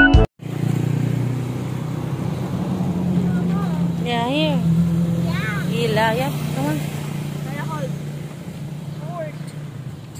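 A steady low motor-vehicle engine hum that swells a little and then fades, with short high children's voices over it.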